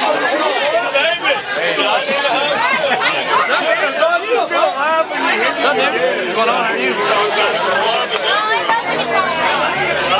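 Party crowd chatter: many people talking at once, their voices overlapping so that no single voice stands out.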